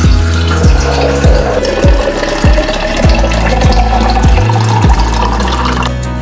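Water poured into a glass jar, the pouring tone rising steadily in pitch as the jar fills and stopping near the end, over background music with a steady deep drum beat.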